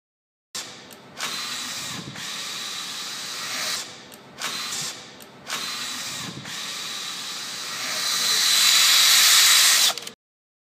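Drill motors driving a robotic gantry crane's carriage across its table, running in stretches with a few short breaks and loudest near the end, where the sound cuts off abruptly.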